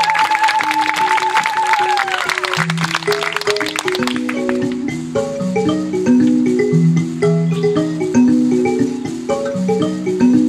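Mbira played inside a gourd resonator, setting up a repeating pattern of plucked metal-tine notes that starts about three seconds in. Under the opening seconds, applause fades out, with a held, wavering high call over it.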